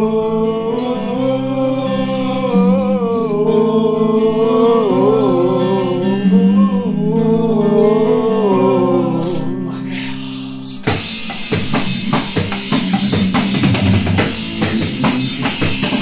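Band rehearsal: a sustained lead melody, most likely from the electric guitar, bends and wavers in pitch over stepping bass notes. About eleven seconds in, the drum kit and full band come in together and the sound turns busier, with a steady beat.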